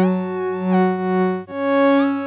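Alchemy additive synth patch holding a sustained tone rich in overtones, with its beating effect making the partials wobble and the level swell slowly; some upper overtones glide in pitch, and about a second and a half in the note changes to a higher one.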